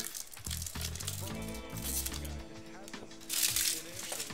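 Foil wrapper of a trading-card pack crinkling as it is torn open and pulled off the cards, loudest near the end, over background music.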